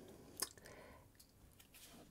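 Near silence: room tone, with one faint short click about half a second in.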